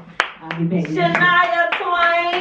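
Hands clapping a quick steady beat, then a woman's voice through a microphone holding two long, drawn-out notes in the second half.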